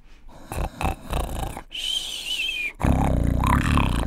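A performer's comic, exaggerated snoring for the sleeping hare: a breathy snore, then a wavering high whistle about halfway through, then a loud low rattling snore near the end.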